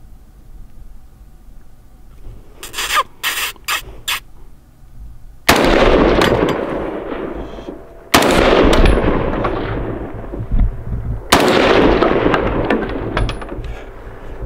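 Three shots from an AR-style rifle, about two and a half and three seconds apart, each followed by a long fading echo.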